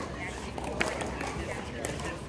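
Pickleball paddles striking a plastic ball in a soft net exchange: two sharp pops about a second apart, the first the louder, over a murmur of voices.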